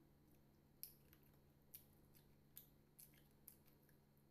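Near silence with about five faint, sharp mouth clicks from chewing fried chicken, over a faint steady low hum.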